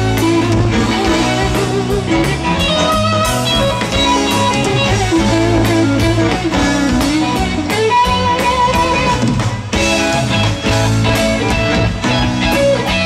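Live rock band playing an instrumental passage: electric guitar lines that bend in pitch over bass guitar and drum kit, without singing.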